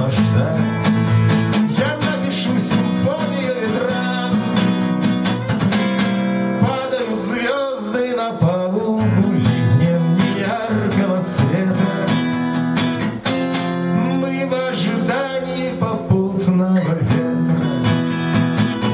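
Acoustic guitar strummed steadily with a man singing the melody over it.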